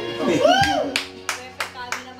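Karaoke backing track playing while hands clap in a steady rhythm, about three claps a second, starting about a second in. Just before the clapping a voice calls out, sliding up and then back down in pitch.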